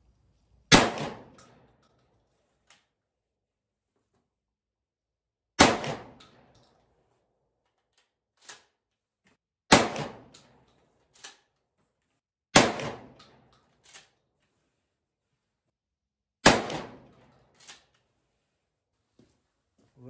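12-gauge shotgun firing 28-gram slugs: five single shots a few seconds apart, each a sharp blast with a short ringing tail. After several of the shots comes a much fainter click about a second later.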